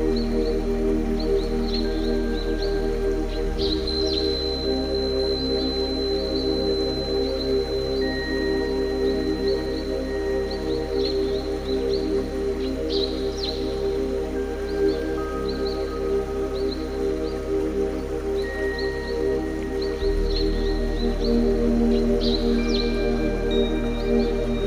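Ambient new-age meditation music built on a 396 Hz tone: held drone tones, with the bass shifting about three and a half seconds in and again near twenty seconds. Short high chirps and thin held high notes are scattered over the drone.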